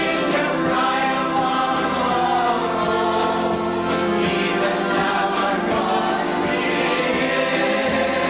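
Mixed church choir of men and women singing a hymn together.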